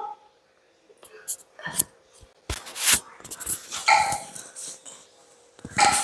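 A dog giving a few short barks, spaced about two seconds apart. Between them come sharp clacks and scrapes of a wooden spatula in a frying pan as cabbage is stir-fried.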